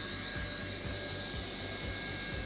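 Handheld hot-air plastic welder running, its blower giving a steady hiss with a faint thin whine.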